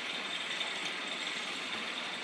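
Steady, even drone of forest insects, strongest in a high band, with no breaks.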